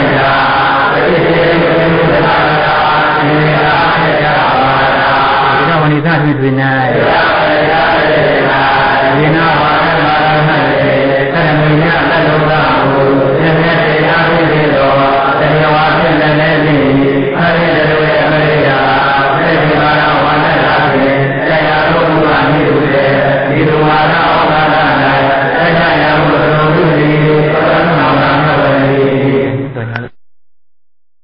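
Buddhist chanting, a steady, continuous recitation on a held low pitch, which cuts off abruptly near the end.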